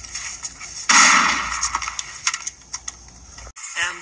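A loud, noisy blast about a second in, followed by scattered sharp clicks, from a film action scene played on a TV.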